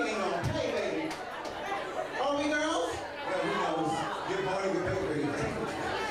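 Speech: a performer talking into a handheld microphone, with overlapping chatter in a large room.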